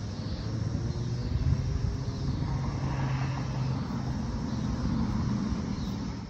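A steady low engine rumble from a motor vehicle, with a low hum that holds level through the middle.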